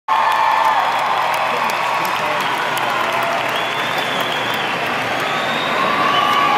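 Large arena crowd applauding and cheering, with many voices and high-pitched screams over steady clapping.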